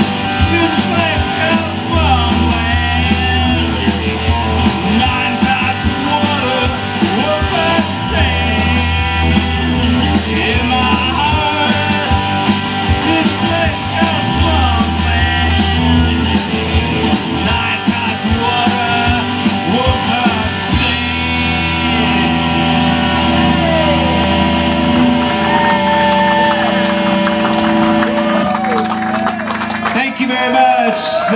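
Live rock band playing electric guitar, bass guitar and drums, with a man singing into the microphone. About two-thirds of the way in the music shifts into a section of long held notes over busy drumming.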